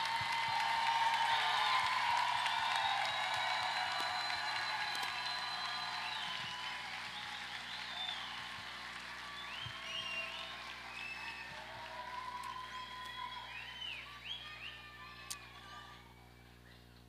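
A large crowd applauding and cheering, with scattered whoops and shouts. It is loudest at the start and dies away gradually.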